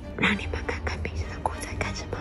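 A person whispering in short broken phrases, over a low steady hum.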